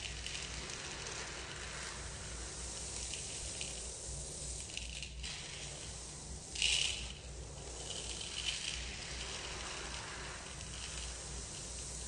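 Dry mixed lentils stirred and scooped by hand in a stainless steel bowl and poured back through the fingers: a continuous rustling patter of small hard grains, with a louder rush of pouring grains a little past halfway.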